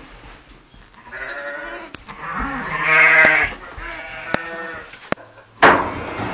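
Sheep bleating in a pen: three drawn-out bleats, the loudest about halfway through. A few sharp knocks and a loud scuffling noise follow near the end.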